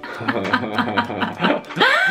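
A man and a woman laughing together in quick snickering bursts, with one voice rising in pitch near the end.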